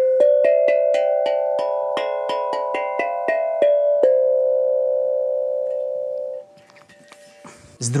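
Steel tank drum cut from a gas cylinder, its C-major tongues struck with a mallet: about sixteen quick bell-like notes over four seconds, mostly climbing the scale, ringing on and overlapping as they slowly fade, then stopped short about six and a half seconds in.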